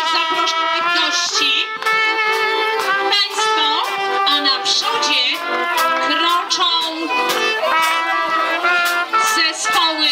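Live Polish folk band of accordion and fiddle playing a lively tune while marching, the held notes and melody running on without a break.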